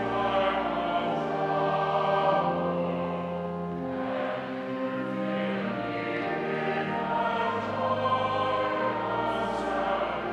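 A church choir singing slow, sustained chords, the notes held for a second or two before each change.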